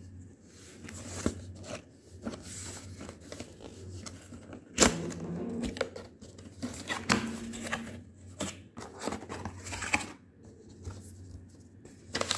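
Hands opening a cardboard box and handling paper inside: irregular rustling and scraping of cardboard and paper, with one sharp snap about five seconds in.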